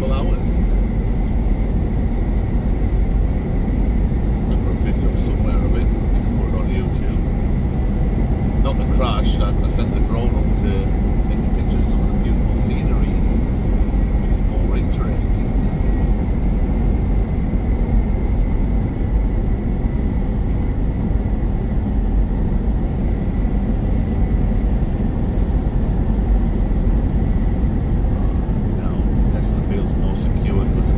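Steady low drone of a truck's engine and tyre noise heard from inside the cab while driving, with a faint steady whine above it. A few light rattles come through around the middle.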